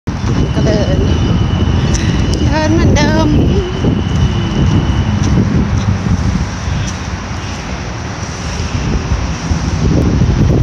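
Steady low rumble of road traffic, with wind buffeting the microphone.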